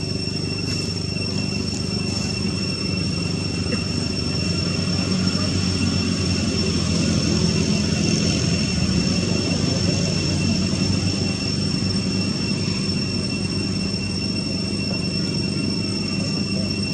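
Steady low hum of a running motor, with a constant thin high-pitched whine above it; it grows a little louder around the middle.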